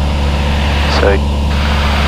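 Cessna 172's piston engine and propeller running at a steady cruise power of about 2200 RPM, a loud, even low drone heard inside the cockpit.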